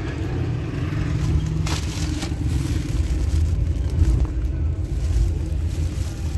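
Steady low rumble of a moving vehicle heard from inside the cabin, with a couple of brief crinkles of a bouquet's plastic wrapping about two seconds in.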